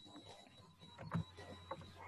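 Faint computer keyboard clicks, a little louder about a second in, over a steady high-pitched electronic whine.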